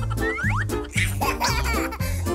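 Upbeat children's background music with a bouncy bass line of about four short notes a second, overlaid with quick rising slide-whistle-like sound effects.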